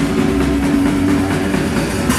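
Hardcore punk band playing live at full volume: a dense wall of distorted guitar and bass with drums and cymbals.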